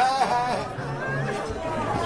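A man's performed, high-pitched cries of pain, a few drawn-out wails in the first half, over the chatter of a crowd in a large room.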